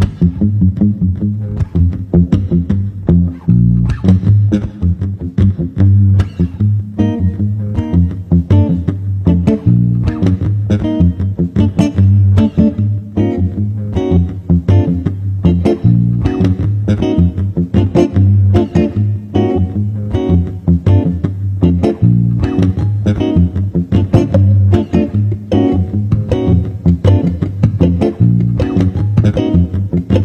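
Electric bass guitar playing live: a fast, continuous line of plucked notes with a strong low end.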